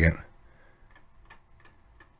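A few faint, short clicks from a computer mouse, spaced a few tenths of a second apart, after a word of speech ends.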